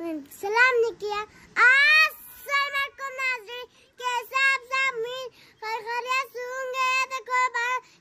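A young girl singing in a high voice: a couple of rising, sliding phrases, then a long run of short, even notes on nearly one pitch.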